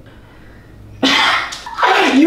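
A short, sudden, breathy vocal outburst from a person about a second in, after a moment of quiet, with speech starting near the end.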